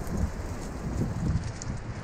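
Wind buffeting the microphone over surf washing around sea-ledge rocks, a steady rushing noise with uneven low rumbles.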